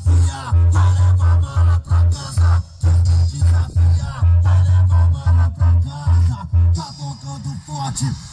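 A pickup's custom sound box with a 15-inch 1100 W RMS woofer and horn drivers playing loud music with a vocal. The deep bass hits in a heavy rhythmic pattern, then drops out about seven seconds in while the vocals and upper parts keep going.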